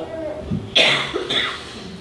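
A short cough, followed by a smaller one about half a second later.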